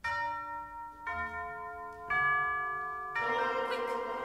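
Four bell-like notes struck one after another, about a second apart, each left ringing on under the next so that a chord builds up.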